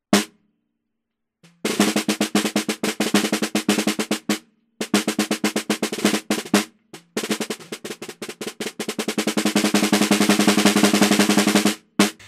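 Snare drum recorded from underneath by an Akai ADM 40 dynamic microphone about 2 cm from the snare wires near the edge. The drum is damped with a ring, so it sounds short and tight. A single hit, a pause of about a second and a half, then runs of rapid strokes with short breaks, swelling louder near the end.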